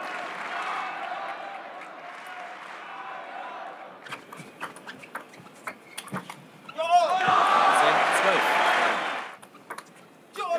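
Table tennis rally in a crowded hall: a quick run of sharp clicks of the ball off bats and table over the murmur of spectators, then the crowd breaks into loud cheering for about two seconds as the point ends.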